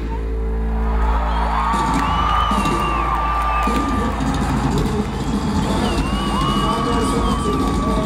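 Rock band playing live, taped on a portable cassette recorder: two long high notes are held over the band, each bending in pitch, while a crowd cheers.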